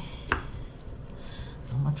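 Frozen tater tots being set down on a casserole in a glass baking dish: one sharp click about a third of a second in, then a few faint light taps.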